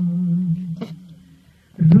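A man singing unaccompanied into a handheld microphone: a long held note trails off within the first second, there is a short pause, and the next phrase starts loudly near the end.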